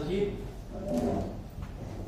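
A man's voice speaking in short phrases, with pauses between them.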